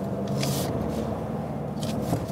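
Ford Ranger Raptor's 2.0-litre bi-turbo four-cylinder diesel running steadily at low revs, heard from inside the cabin while driving slowly. There is a short hiss about half a second in.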